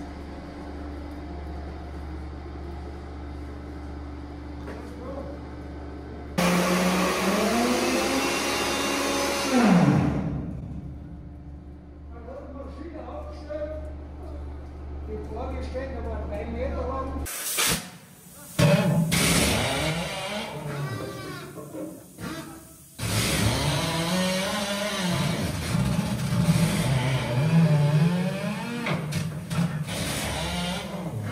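A steady low hum. About six seconds in, a mining machine starts up loudly, its pitch climbing, and winds down about four seconds later. People's voices follow, echoing in the tunnel.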